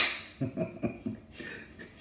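A man chuckling quietly under his breath: a few soft, short, irregular pulses in the first second, after a brief click as the speech breaks off.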